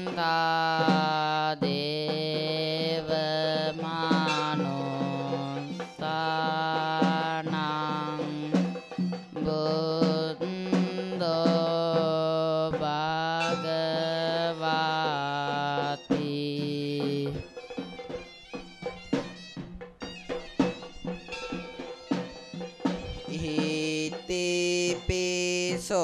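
Sri Lankan temple ritual music: a reed pipe plays a held melody over traditional drums. The melody drops out for a few seconds past the middle, leaving quicker drum strokes, and comes back near the end.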